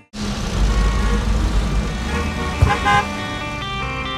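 A car's engine and road rumble heard from inside the cabin, with a short honk about two and a half seconds in. Guitar music comes in near the end.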